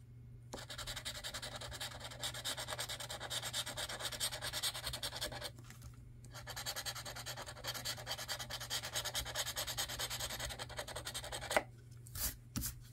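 Scratch-off lottery ticket being scraped with a handheld scratcher tool: rapid back-and-forth scratching strokes, a brief pause about halfway, then more scratching. A sharp tap comes near the end.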